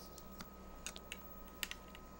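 A few faint, scattered clicks and taps over a low, steady hum.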